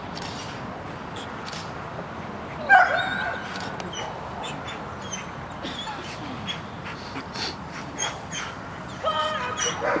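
A dog whining and yipping in short high-pitched calls, the loudest one about three seconds in and a quick run of them near the end.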